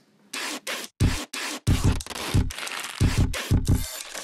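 Black felt-tip marker scratching across corrugated cardboard as letters are written: a run of short, irregular scratchy strokes, several a second, with brief gaps between letters.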